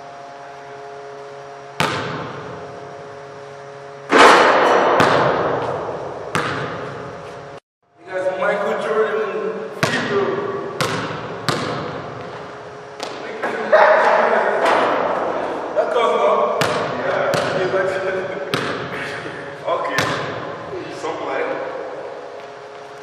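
Basketball bouncing on a hardwood gym floor, sharp single bounces that ring out in the large hall, coming irregularly and more often in the second half. The sound drops out completely for a moment about eight seconds in.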